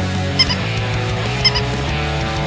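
Rock music with electric guitar, with two quick double honks about a second apart laid over it.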